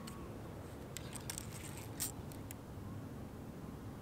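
A few faint, sharp clicks and small rattles from a fishing rod and baitcasting reel being handled under a bent rod, over a steady low background rumble. The line is hung on a snag.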